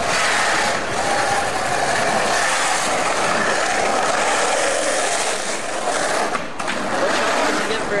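Skateboard wheels rolling over rough pavement in a steady roll that drops away briefly about six and a half seconds in.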